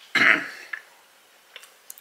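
A man gives one short, rough cough near the start, set off by a too-hot bite of food, followed by a few faint clicks of cutlery.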